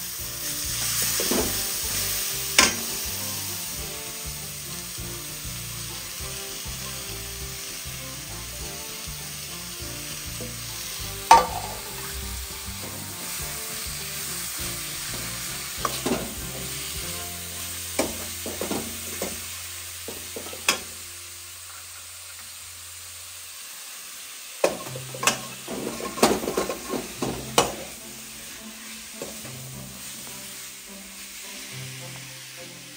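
Grated raw papaya sizzling in hot oil in a metal kadhai while a metal ladle stirs it, with sharp clicks of the ladle striking the pan every few seconds, coming in a quick cluster near the end. The sizzle quietens a little about two thirds in.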